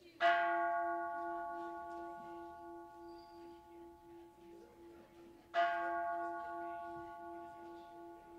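Kansho, the Buddhist temple bell rung to open the service, struck twice about five seconds apart. Each stroke rings on and fades slowly, over a low hum that throbs steadily.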